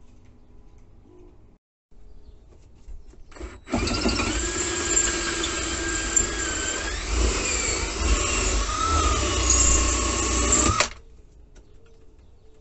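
Cordless drill boring a screw hole through a steel hinge on a metal seat frame: a short trigger burst about three seconds in, then the motor runs for about seven seconds with its whine wavering in pitch under load, and cuts off suddenly.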